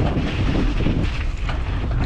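Wind rushing over the microphone and tyres rolling on a dirt trail as a mountain bike descends, with short rattles from the bike over small bumps.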